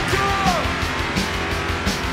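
Alternative rock band playing, with drums keeping a steady beat under electric guitar. A high sliding note falls in pitch about half a second in.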